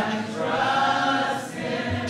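Congregation singing a hymn together without accompaniment, holding a long note softly.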